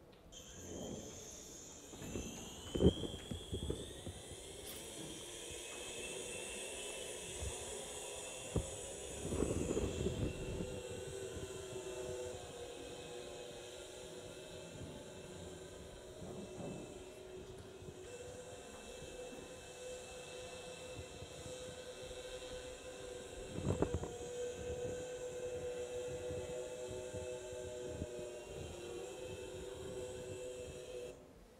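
Six-armed multirotor (hexacopter) LiDAR drone taking off and climbing. The whine of its motors rises in pitch over the first few seconds, then holds steady. It is heard as a video played back into a lecture room, with a few dull thumps, the loudest about three seconds in and others near the middle and late on.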